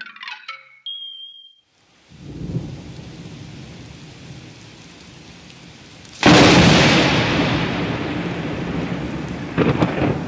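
Thunderstorm: steady rain and rumbling, then a sudden loud thunderclap about six seconds in that fades slowly. A short high tone sounds near the start.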